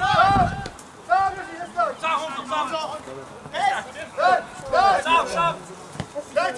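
Footballers shouting short calls to each other across the pitch during play, one loud, high call after another every half second to a second.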